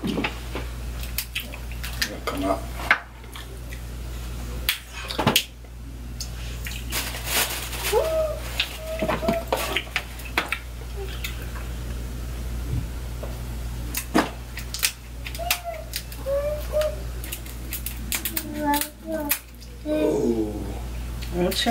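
Snow crab leg shells being cracked by hand and snipped with scissors: irregular sharp cracks and clicks, mixed with close chewing and mouth sounds.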